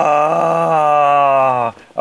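A man's long, loud groan of frustration, one held note sliding slowly down in pitch and breaking off near the end.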